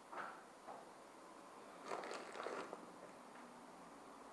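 Fingers rubbing sugar over a buttered baghrir (semolina pancake), the grains crunching faintly: two brief gritty bursts near the start and a longer patch about halfway.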